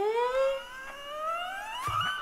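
A rising-pitch sound effect: a single tone with overtones glides steadily upward over about two seconds, ending as music comes in.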